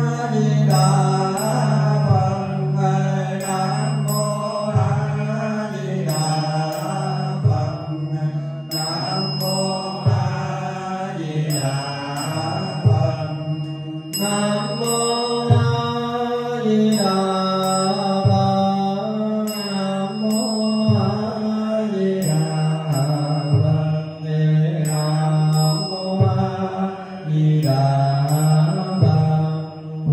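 Buddhist chanting: a slow, continuous melodic recitation in low voices, kept in time by a regular knock about every second and a quarter.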